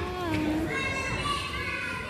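Children's voices in an indoor play area: high calls and chatter, with one high voice held for about the second half.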